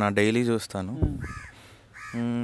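A crow cawing briefly and faintly, once, a little after a second in, following a man's drawn-out voice.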